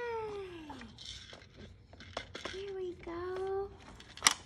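Five-month-old baby vocalizing: a drawn-out coo that falls in pitch, then a second, steadier one about two and a half seconds in. A few light clicks from the plastic toys come in between.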